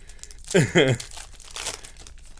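Plastic wrapper of a trading card pack crinkling as it is torn and handled, loudest in the second half. A short burst of a man's voice falls in pitch about half a second in.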